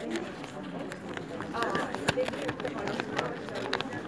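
Indistinct voices of people talking in a busy waiting hall, with scattered sharp clicks and footsteps.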